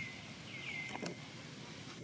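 High whistled bird calls over steady outdoor background noise: three short calls in the first second, each dropping quickly in pitch and then holding level, with a brief sharp click about a second in.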